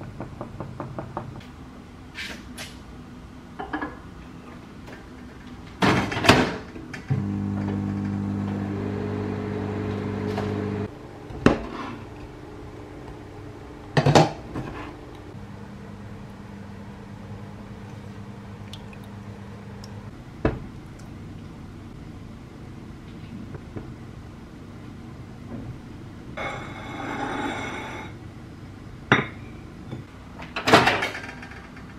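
Wooden fork clicking against a ceramic mug as batter is stirred, then scattered knocks and clinks of dishes on a stone counter. A steady electric appliance hum runs for about four seconds in the middle, and a quieter one comes in later.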